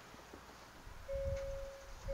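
Near silence, then about a second in a steady electronic chime tone from the dashboard begins and holds, over a faint low rumble as the 2021 Hyundai Palisade is started.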